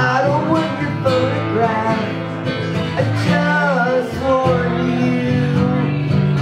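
Acoustic guitar strummed in a steady chord rhythm under a harmonica melody played from a neck rack, with bent notes.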